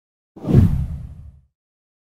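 A deep whoosh sound effect for an animated on-screen transition. It comes in suddenly about a third of a second in, is loudest almost at once, and fades out within about a second.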